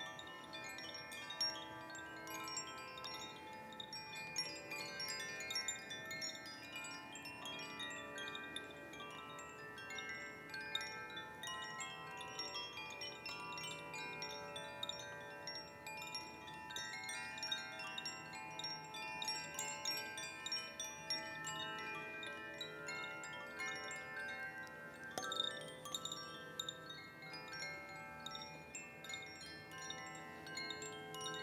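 Chimes ringing continuously: many bell-like tones at different pitches struck one after another and left to ring over each other, with no steady beat.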